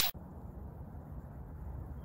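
A whoosh sound effect cuts off at the very start, followed by a steady low rumble of outdoor background noise.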